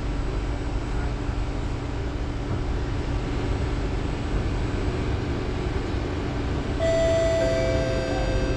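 Steady low hum of a C751B train car standing at a station with its doors open. Near the end, the door-closing chime starts: a clear beeping tone, joined half a second later by a second, lower tone.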